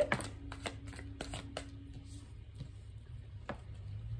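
A deck of tarot cards shuffled by hand, a quick irregular run of papery flicks and taps over a low steady hum.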